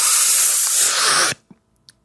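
A man's forceful, hissing exhale through the mouth, a mock 'total concentration breathing'. It lasts about a second and a half, then cuts off sharply.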